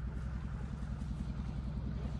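Small boat's engine running steadily, a low chugging with a fast, even pulse.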